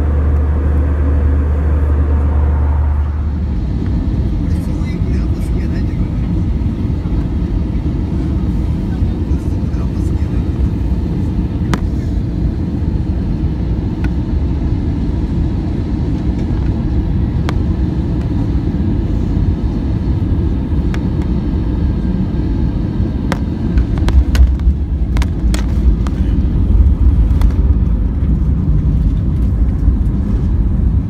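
Jet airliner cabin noise at a window seat over the engine: a steady engine and airflow hum at cruise, then, after a cut about three seconds in, the lower, rougher rumble of the jet on final approach. The rumble grows louder, with a few sharp knocks, in the last several seconds as the plane comes down to the runway.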